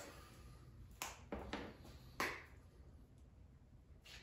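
A few faint, brief crackles as a scrap of brittle denim char cloth is torn apart by hand.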